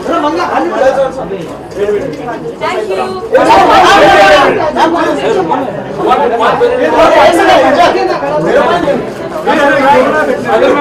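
Several people talking over one another in a large room: continuous crowd chatter.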